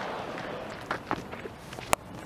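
Low ground ambience with a few faint scattered clicks, then one sharp crack of a cricket bat striking the ball near the end.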